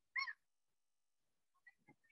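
A single brief, high-pitched vocal cry, well under half a second long, just after the start, followed by a couple of faint soft ticks near the end.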